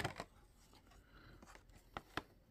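Faint handling of a cardboard advent calendar box: fingers pressing and working its perforated doors, with a couple of sharp cardboard crackles at the start and another near the end.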